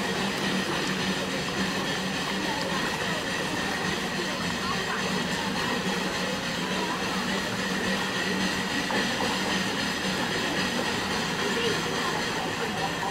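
Steam plant of a steam narrowboat running, with steam venting from the chimney: a steady hiss and rumble that carries a constant hum.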